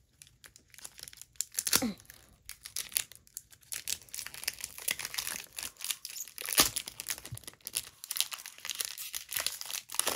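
Foil wrapper of a Pokémon trading-card booster pack crinkling and tearing as the pack is opened by hand and the cards are pulled out, in irregular crackles with a sharp louder crinkle about six and a half seconds in.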